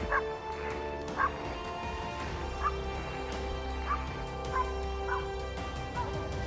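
A dog barking, about six short barks at irregular intervals, over background music of sustained tones.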